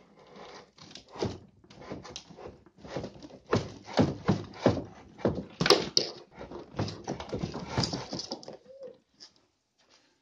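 Brushtail possum making a rapid, irregular run of harsh, rasping hisses, the noise of a possum disturbed and cornered in its hiding place.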